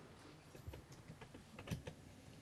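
Faint typing on a computer keyboard: a few scattered, irregular key clicks.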